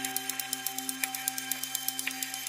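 Processed Nepalese bell sample: its tonal part rings on as a steady drone of several held pitches, while its strike transient repeats as a fast, even stream of clicks, about eight a second, with a stronger click twice.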